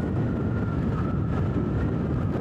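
Motorcycle running steadily at cruising speed, with wind rushing over the microphone.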